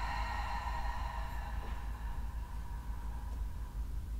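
Quiet room tone: a steady low hum, with a faint high ringing tone that fades away over the first few seconds.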